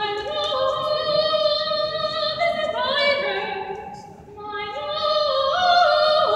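A woman singing solo and unaccompanied, holding long, steady notes, with a short break for breath about four seconds in.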